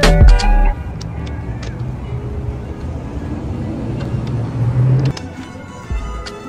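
Background music that stops under a second in, giving way to street noise with traffic: a vehicle's low engine rumble swells about four seconds in. Music comes back in near the end.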